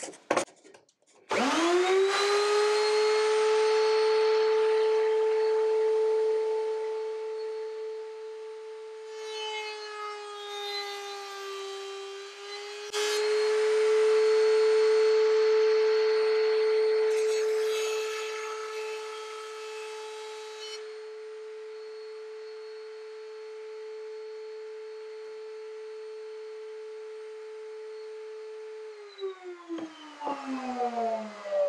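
Table-mounted electric router starting up with a rising whine and running at steady high speed. Its pitch sags as a wooden lath is fed past the bit, and later comes a few seconds of scraping cutting noise. The motor winds down with a falling tone near the end.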